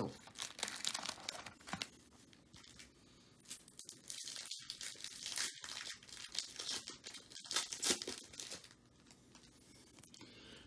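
A trading card pack's wrapper torn open and crinkled by hand, in crackling bursts that ease off briefly about two seconds in and again near the end.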